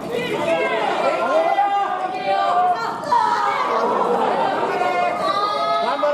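Women's voices shouting and straining in long, wavering cries, several overlapping at once, with no clear words.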